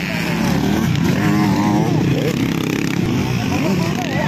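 Motocross dirt bike engines running as the bikes ride through a dirt corner, their pitch shifting with the throttle. A voice calls out over them about a second in.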